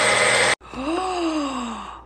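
Magic Bullet blender running and cutting off suddenly about half a second in. Then a single drawn-out vocal sound, like a sigh or moan, that rises and then slides down in pitch.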